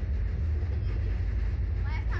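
Steady wind rumble buffeting the microphone on a swinging Slingshot ride capsule, with a rider's brief voice near the end.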